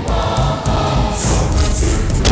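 Dramatic background score: choir voices sing over a pulsing low beat, with a hissing swell in the highs in the second half.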